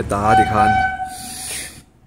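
A train horn sounding one steady note for about a second and a half, under a man's speech at the start.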